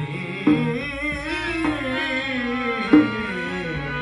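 Live folk devotional music: a harmonium holds sustained reedy notes under a man singing a wavering, ornamented melody. A dholak barrel drum comes in with sharp hand strokes, the loudest about half a second in and just before the end.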